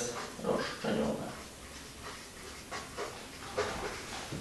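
Felt-tip marker squeaking and rubbing on flip-chart paper in a few short strokes while a list is written.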